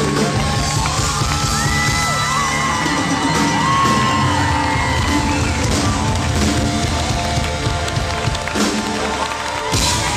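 Live rock band playing amplified music in an arena, heard from inside the audience, with the crowd cheering and whooping over it.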